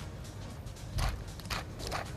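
A hand-twisted pepper mill grinding pepper, giving short crunchy bursts about a second in and again near the end.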